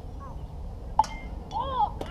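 A baseball bat strikes a ball once, sharply, about a second in, with a short high call from a child's voice near the end.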